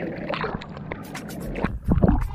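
Sea water sloshing and splashing around a camera at the waterline of a surfboard, with a louder splash near the end.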